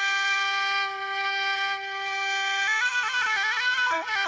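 Music led by a wind instrument: it holds one long steady note, then near the end breaks into quick ornamented runs of notes.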